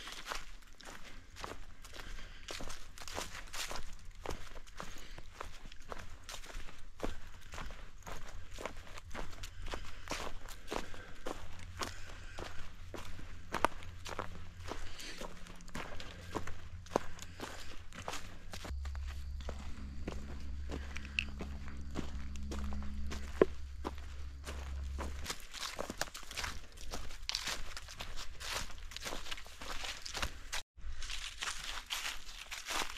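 Footsteps of a hiker walking a dirt forest trail covered in fallen leaves, each step a short crunch or rustle in a steady walking rhythm. A low steady hum joins for several seconds in the middle.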